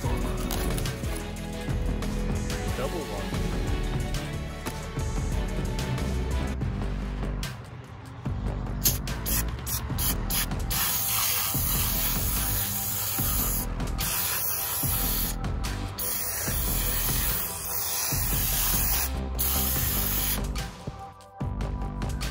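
Aerosol foam coil cleaner hissing from its can onto an RV rooftop air conditioner's condenser coil, in long sprays with short breaks, starting about a third of the way in and stopping shortly before the end. Background music plays underneath throughout.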